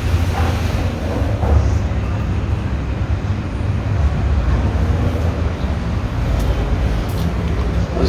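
A steady low rumbling noise with faint, indistinct voices.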